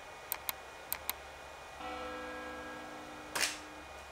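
Sony A7 III mirrorless camera shutter fired twice, each release a quick double click, the two shots about half a second apart. A steady low hum follows for about two seconds.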